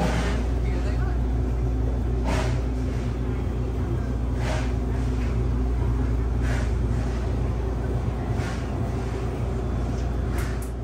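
Steady low hum of an open-front refrigerated display case, with a short soft rushing sound about every two seconds and voices in the background.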